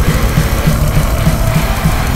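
Death/thrash metal demo recording: a heavily distorted, low-tuned guitar riff of short repeated notes over drums, played at full volume.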